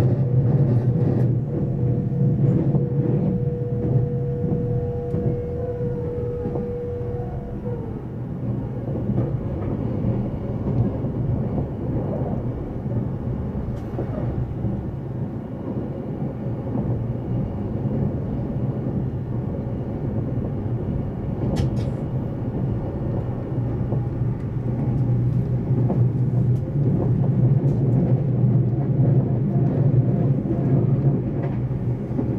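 Cabin noise inside a motor car of an E353-series electric limited express running at speed: a steady low rumble of wheels on rail and running gear. A thin steady whine runs for the first eight seconds or so and then stops.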